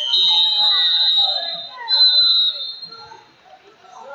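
Electronic scoreboard buzzer sounding as the wrestling clock hits zero, a steady high tone that stops a little under two seconds in, then a second short buzz, over crowd voices and shouting in the gym.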